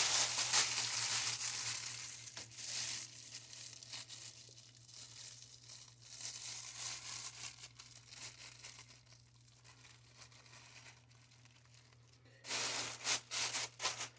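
Thin plastic bag crinkling and rustling as it is pulled over the head and twisted into a knotted cap. The crinkling is loudest at the start, quieter through the middle, then comes in another loud burst near the end.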